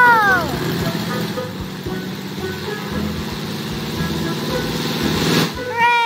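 Cartoon propeller plane's engine buzzing steadily under background music. A falling whistle-like glide comes at the start and again near the end, the second one just after a short whoosh.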